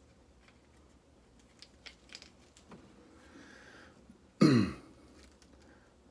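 A few faint clicks and ticks from fingers working a tenkara rod tip and its line, then a man clearing his throat once, loudly, about four and a half seconds in.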